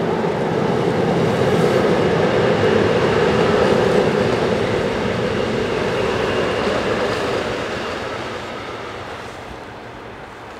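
Electric passenger train passing at speed, a steady rush of wheels on rail that builds to its loudest a few seconds in and fades away over the last few seconds as the train goes by.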